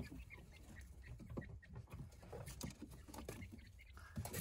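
23-day-old Japanese quail moving about on paper towels: faint scattered ticks and scratches from their feet and pecking, with a few soft bird sounds.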